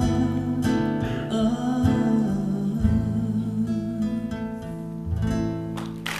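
Nylon-string classical guitar strumming slow chords, each left to ring, growing quieter toward the end as the song closes, with a last chord struck about five seconds in.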